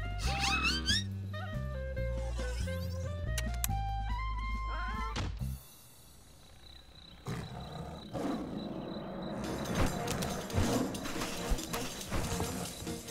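Cartoon score with a stepping bass line, a melody and rising sliding notes, which cuts off abruptly about halfway. After a short hush, a rustling night texture rises, with a thin steady high tone like an insect and a few sharp thumps.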